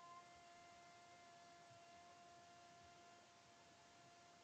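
Near silence: a faint steady electrical hum over light hiss.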